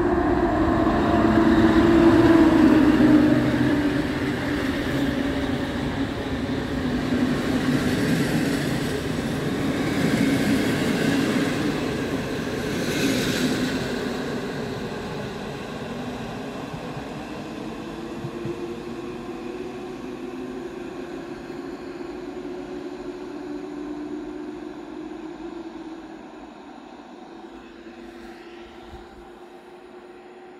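EP07 electric locomotive hauling a passenger train past on the rails: loud at first, with a hum that drops in pitch as the locomotive goes by, then the coaches running past and the sound fading steadily as the train draws away. A brief high hiss sounds about halfway through.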